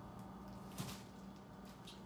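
Faint rustling of a T-shirt being handled, with a couple of brief soft noises a little under a second in and near the end, over a low steady room hum.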